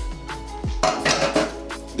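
Glass kitchenware clattering on the counter as a small glass prep bowl is handled and set down, with a rattling burst about a second in. Background music with a deep bass beat runs underneath.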